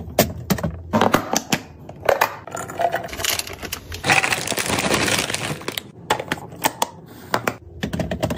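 Clear hard-plastic snack canisters clicking and knocking as they are handled and set down, in a run of sharp, irregular clacks. A stretch of packaging crinkling comes about four seconds in.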